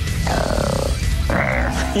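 A growling demonic voice in two drawn-out bursts, the first about three-quarters of a second long and the second shorter, over steady background music.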